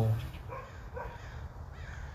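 A crow cawing a few times, faint, with short calls about half a second in, about a second in and near the end.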